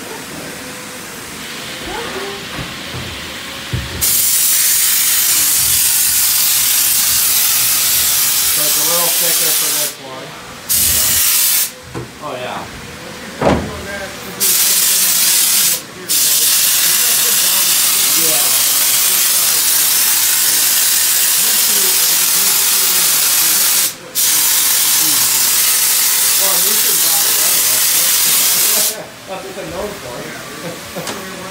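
Pneumatic spray gun spraying adhesive: a loud, steady air hiss that starts about four seconds in and runs in long bursts with a few short breaks, stopping about a second before the end.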